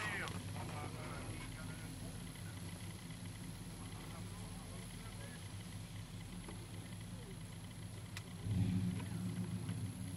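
A vehicle engine idling with a steady low hum, heard from inside a vehicle's cabin, growing louder for about a second near the end.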